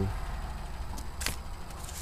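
A few light clicks and taps from plastic CD cases and their paper inserts being handled, the loudest a little over a second in, over a steady low rumble.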